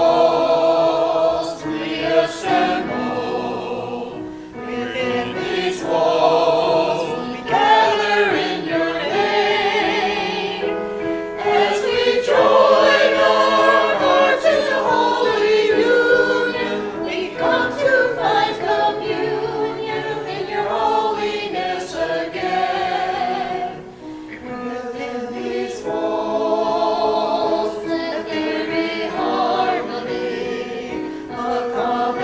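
Small mixed church choir singing with keyboard accompaniment, in phrases separated by short breaks.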